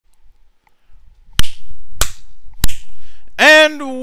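Three sharp cracks, a little over half a second apart, each with a short ringing tail. A voice then starts speaking near the end, drawing out its first word.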